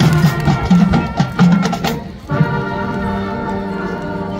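Marching band playing: drums and low brass in a punchy rhythmic passage for about two seconds, a brief break, then the band holding a sustained brass chord.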